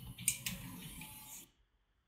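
Faint room noise from a dental chairside recording with two sharp clicks about a third and half a second in; the sound cuts off suddenly about three quarters of the way through, leaving near silence.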